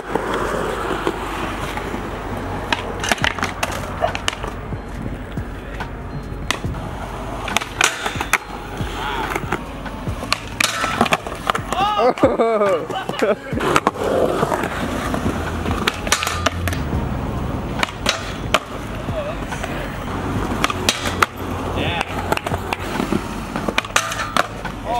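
Skateboard wheels rolling over concrete, broken by repeated sharp clacks of the board's tail popping and landing, and the board hitting and grinding a low metal flat rail.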